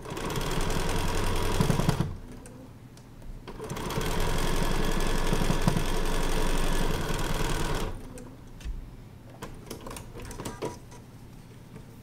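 Electric sewing machine stitching a seam in two runs, about two seconds and then about four seconds, with a short pause between, as the quilt strips are sewn from seam to seam. The machine then stops, and a few light clicks follow as the sewn piece is lifted out.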